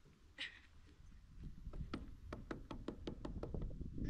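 A fast, irregular run of light clicks and knocks, several a second, starting about a second and a half in and growing busier, over a low rumble.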